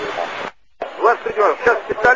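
Speech in Russian over an air-traffic-control radio channel. One hissy transmission cuts off about half a second in, and after a brief silence another voice comes in.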